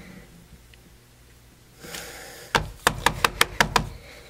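A brief rustle, then about eight quick, sharp taps in a little over a second: a rubber stamp on a clear acrylic block being tapped down.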